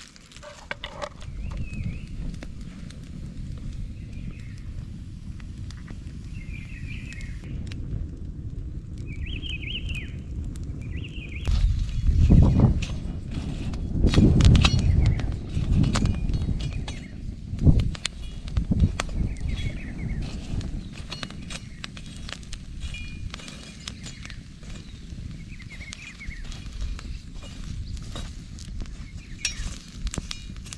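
Wind gusting on the microphone, with birds chirping now and then. Partway through, the crackle and sharp pops of an open wood fire join in, and several strong wind gusts follow.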